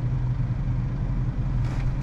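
A vehicle engine idling, heard from inside the cab as a steady low hum.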